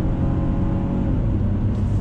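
2020 Ford Escape's 1.5-litre turbocharged three-cylinder engine heard from inside the cabin, pulling steadily under throttle over tyre and road noise; the engine note is not too buzzy.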